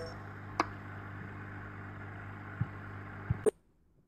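Steady low background hum with a few sharp clicks, one about half a second in and a few more near the end, then the sound cuts off abruptly into silence.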